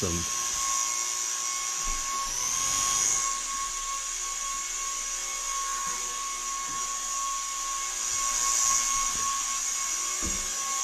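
Hover-ball flying toy's two small electric fans running in flight, a steady high-pitched whine that rises briefly in pitch about two and a half seconds in.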